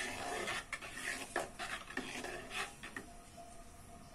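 A ladle stirring a thin starch-and-sugar mixture in a large metal cooking pot: irregular scrapes and light clinks against the pot with swishing liquid, tailing off after about three seconds.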